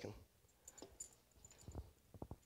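Near silence with a few faint, scattered clicks and light handling noise.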